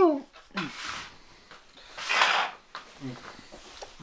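People's voices in a small room: a voiced sound trailing off and falling in pitch at the start, a short hissing noise about two seconds in, and faint low talk near the end.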